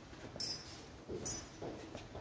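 A few brief soft sounds in a small quiet room: footsteps on the floor and the rustle of paper certificates.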